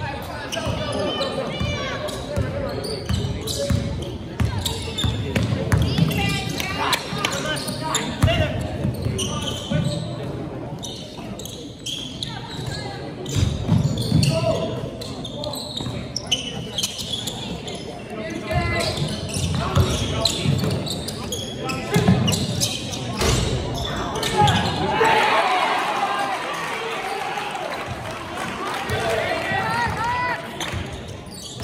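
Basketball dribbled on a hardwood gym floor during live play: repeated sharp bounces, with players' and spectators' voices carrying in the large gym.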